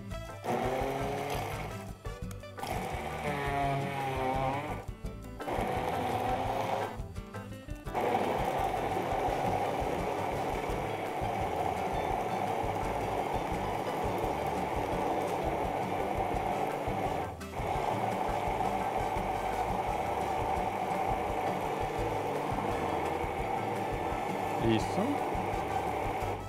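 Hand-held immersion blender running in a tall plastic beaker, puréeing mixed berries. It runs in three short pulses over the first seven seconds, then runs steadily for most of the rest, stopping briefly about two-thirds of the way through.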